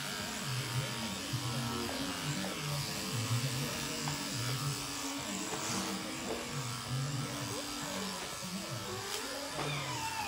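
Electric shearing handpiece buzzing as its cutter clips the fleece off a young alpaca.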